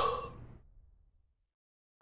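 The tail of a man's whooping 'woo' exclamation fades out in the first half-second, followed by dead silence.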